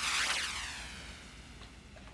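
An edited-in whoosh transition effect: a sudden sweep falling in pitch that fades away over about a second and a half.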